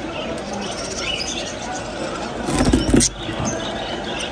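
Bird-market ambience: small caged birds chirping over background voices, with a louder burst of noise about two and a half seconds in that cuts off suddenly just after three seconds.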